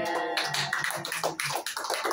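A small group clapping and talking over one another, a dense patter of hand claps mixed with overlapping voices.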